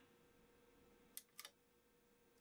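Near silence: room tone, with two faint, short clicks a little after a second in.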